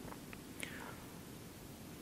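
Faint room tone in a reverberant church during a pause in a man's speech, with a small click about a third of a second in and a soft breath-like sound just after.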